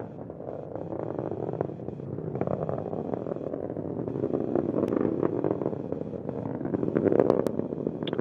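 Atlas V rocket roaring in ascent: a steady rumbling noise with a little crackle, swelling slightly about five and seven seconds in.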